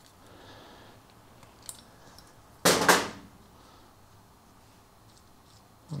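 Quiet handling of small metal airbrush parts and pliers, with faint ticks and one short, loud metallic clatter about three seconds in.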